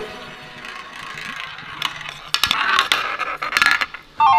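A small toy roulette wheel spun by hand, its ball rolling around the rim and then rattling and clicking over the pockets about two seconds in.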